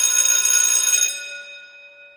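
Electric school bell ringing, signalling lunch time. The ringing stops about a second in and dies away over the next second.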